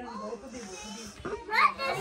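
Speech: several people, children among them, talking and calling out in a small room, with a child's higher voice rising near the end.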